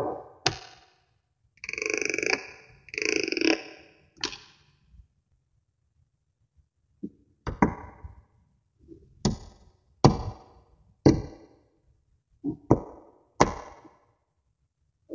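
Tiny silver magnet balls clicking and snapping together as rows are joined and pressed into a flat sheet. Two longer rattling clatters come in the first few seconds, then a short pause, then about eight sharp single clicks spaced roughly a second apart.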